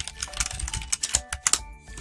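Computer keyboard being typed on: a quick run of key clicks, over background music.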